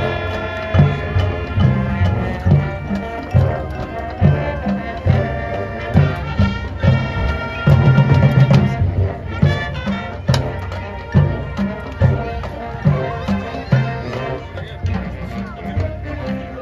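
A marching band playing live: brass and saxophones over a regular bass drum beat, with a louder stretch about eight seconds in.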